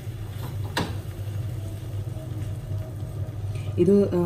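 Silicone spatula working thick jackfruit jam in a nonstick pan, with one sharp tap about a second in, over a steady low hum.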